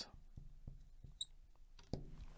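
Faint squeaks and light taps of a marker pen writing on a glass lightboard, in a few short, scattered strokes.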